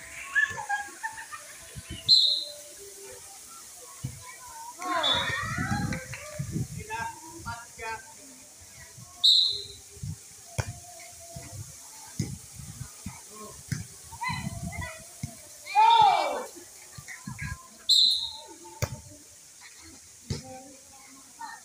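Volleyball rally: a few sharp smacks of hands striking the ball, seconds apart, with players shouting and calling out in short bursts and background chatter.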